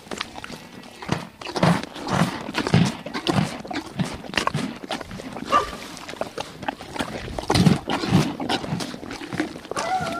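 Plains zebras calling: a run of short, repeated calls, coming in clusters, with the loudest calls a little before the end.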